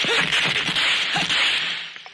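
Fight-scene sound effects: a quick run of sharp cracking, whip-like hits and swishes over a steady hiss, fading away near the end.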